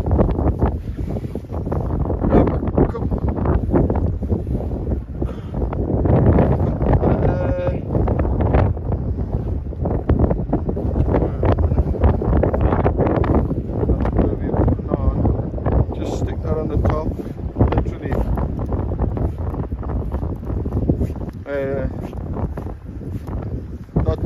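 Strong wind buffeting the microphone, a dense low rumble that swells and drops.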